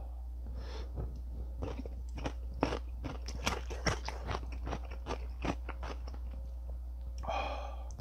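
Close-up chewing of a crisp cube of pickled radish (chicken-mu): a quick run of sharp crunches through the middle, easing off toward the end.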